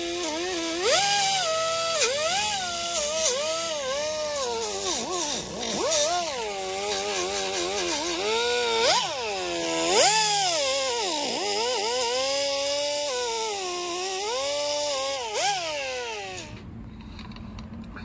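Die grinder with a Scotch-Brite abrasive wheel working the edges of a carbon-fibre chassis plate: a whine that keeps rising and falling in pitch as the wheel bears on the edge, with a hiss over it. It stops near the end.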